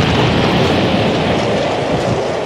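Large explosion sound effect: a loud, continuous rumble with crackle running through it.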